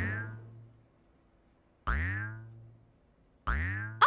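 Cartoon 'boing' sound effects for a big bouncing ball, three in a row about one and a half seconds apart. Each starts sharply with a falling twang that settles into a low hum and fades away over about a second.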